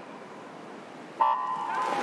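Electronic start signal of a swimming race. About a second in, a steady beep sounds for nearly a second, sending backstroke swimmers off the wall, over a faint hush from the pool hall.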